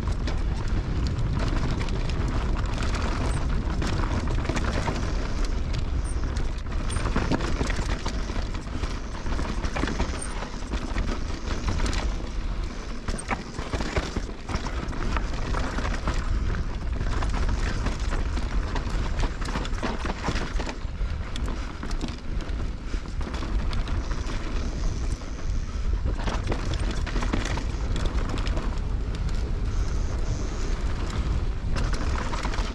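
Wind buffeting the action camera's microphone as a 2020 Norco Range VLT electric mountain bike descends at speed, its knobby tyres rolling over dry, rocky dirt. Frequent small rattles and knocks from the bike over the rough ground.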